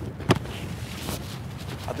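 A single sharp thud about a third of a second in: a boot kicking an American football on a field-goal attempt, over a low rumble of wind on the microphone.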